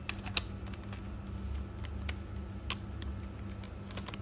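A few sharp metal clicks as a 39 mm socket and adaptor on a cordless impact wrench are fitted onto and knocked against the nut of a scooter's clutch and torque-spring assembly, over a steady low hum; the wrench itself is not run.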